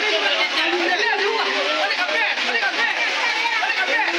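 Several people talking and calling out over one another, their voices overlapping into a continuous chatter.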